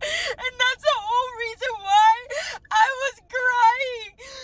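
A woman crying hard: high-pitched sobbing and wailing, broken by sharp, noisy breaths at the start and again about two and a half seconds in.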